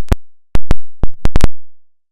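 A quick series of about seven sharp digital clicks in the first second and a half, with dead silence between them: audio glitches at an edit join, not a sound from the car.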